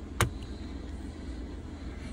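A steady low background hum with one short, sharp click about a fifth of a second in.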